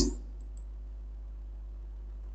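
A couple of faint computer mouse clicks in the first half-second, over a steady low hum.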